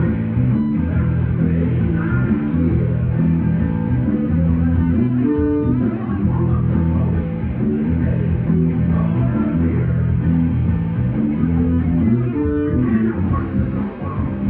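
Live rock band playing loudly: electric guitar and bass guitar, with a man singing into a microphone.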